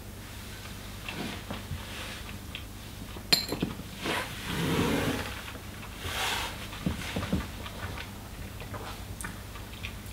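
A whisky taster's mouth and breath sounds while holding a sip on the tongue: a sharp click about three seconds in, then two heavy breaths out, and light knocks as the glass is set down on the table.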